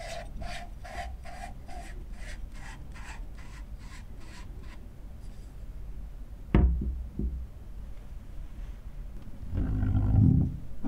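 Threaded metal rings of an adapted lens barrel being twisted by hand, a dry rubbing scrape repeating a little more than twice a second for about five seconds. A single sharp knock comes past the halfway point, and there are more handling noises near the end.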